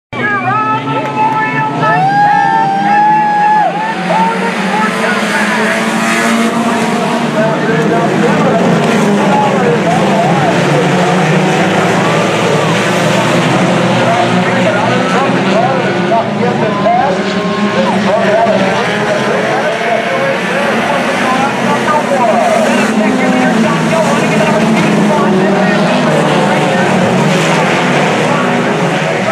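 A pack of sport compact race cars running together on a dirt oval, many engines revving and easing off at once as the field races.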